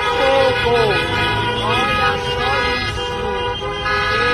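Many car horns honking at once in a steady, overlapping chorus, with voices shouting over them.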